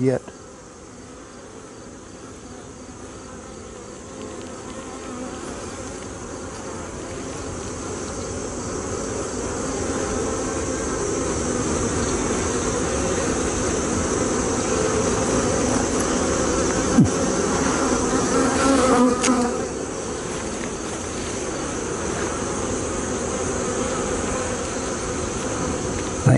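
Dense buzzing of a honeybee colony swarming over a brood frame lifted from its opened hive. The buzz grows louder over the first ten seconds or so, then holds steady. The bees are stirred up at the hive being opened.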